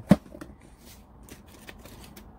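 A single sharp click or knock just after the start, followed by faint scattered clicks and light rustling of small objects being handled.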